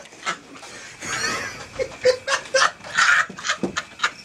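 People laughing hard and hollering in irregular bursts, loudest through the middle of the stretch.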